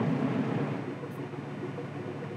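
A sportfishing boat's twin inboard engines running at low speed in gear, a steady low rumble, as the boat backs into a slip.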